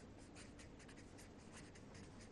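Felt-tip marker writing a word on paper: faint, quick, irregular strokes of the tip rubbing across the sheet.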